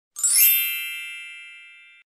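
A single bright chime, struck once about a tenth of a second in, rings with high overtones and fades steadily over about two seconds before being cut off.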